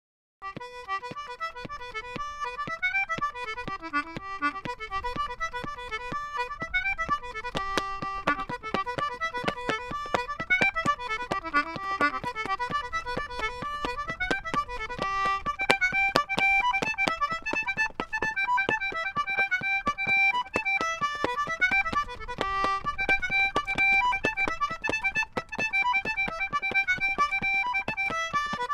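Concertina playing a fast traditional dance tune, starting about half a second in. Many sharp taps run through the music.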